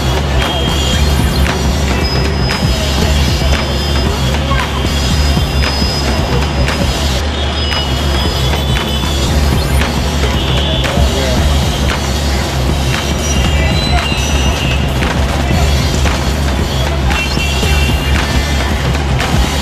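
Loud busy city street noise with music playing through it: a steady low rumble, frequent small clicks and knocks, and brief high tones scattered throughout.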